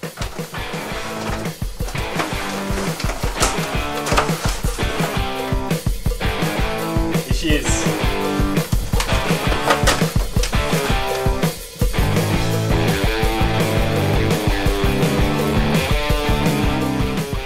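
Background music with a steady beat and a stepping bass line.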